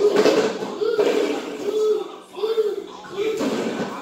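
A high-pitched voice, like a young child's, making short rising-and-falling calls with no clear words, over a faint steady hum.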